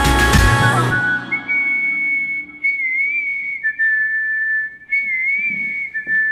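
A K-pop track thins out about a second in to a high whistled melody over faint backing. A second, lower whistle tone comes in partway through and is held alongside it.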